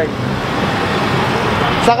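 Street traffic noise: a steady rush of motor vehicles.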